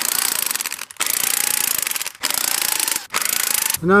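Corded electric impact wrench hammering in four bursts of about a second each, backing off the threaded rods of a manual coil-spring compressor to slowly release the tension on a rear strut spring.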